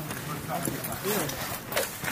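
Voices of people talking in the background, with a few sharp clicks from a boot being fastened into a cross-country ski binding.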